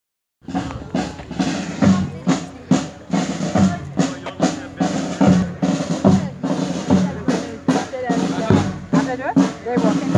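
Marching band playing a funeral march: snare and bass drums keep a steady beat of about two hits a second under sustained low tones. It starts abruptly about half a second in.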